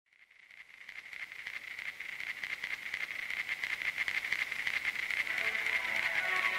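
Opening of a song recording fading in: a steady, high-pitched hiss that pulses rapidly and grows louder.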